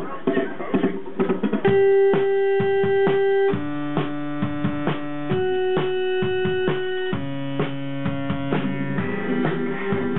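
Synthesizer keyboard playing a slow run of four sustained chords, each held about two seconds before switching to the next, as the song starts. Before the chords, for about the first second and a half, there is mixed chatter and clatter.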